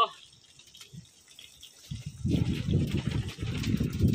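A drink poured from a bottle into a small plastic cup. The pour starts about two seconds in, after a quiet first half, and keeps going.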